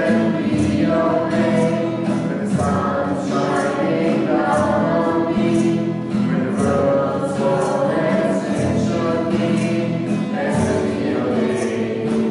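A worship song sung by several voices together, with an acoustic guitar strummed in a steady rhythm.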